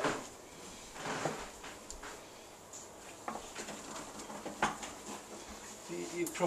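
Scattered soft knocks, clicks and rustles of people moving about and handling things, with a sharp knock at the very start and another a little past four and a half seconds.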